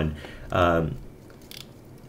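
A man's voice in a small room: one short spoken syllable, then a pause with a few faint clicks.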